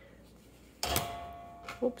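A sudden knock on something hard that rings with a clear tone and dies away over about a second, the sound of an object bumped or set down on the table, followed by a short spoken "oops".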